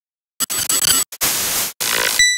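Loud static noise used as a glitch sound effect, starting about half a second in and cutting out briefly twice.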